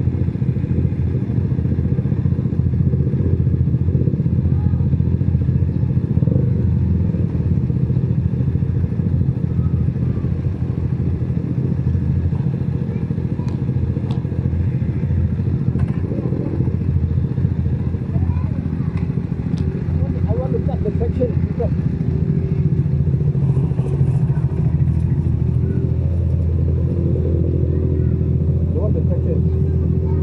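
Motorcycle engine idling steadily in neutral, with no revving, and faint voices now and then.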